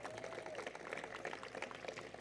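Faint audience applause, an even crackle of many hand claps without words, fading toward the end.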